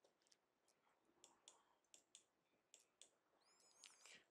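Near silence with a few faint, scattered clicks and a brief faint high chirp near the end.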